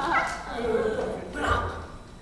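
Short dog-like yelps and whimpers that rise and fall in pitch, with a louder cry about one and a half seconds in; the sound drops away just before the end.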